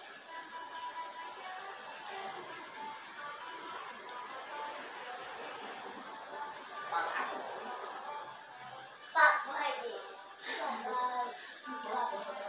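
Faint voices and chatter, with louder speech-like stretches about seven seconds in and again near the end.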